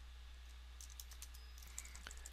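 Faint computer keyboard typing: a few scattered key clicks, coming more often in the second half, over a steady low electrical hum.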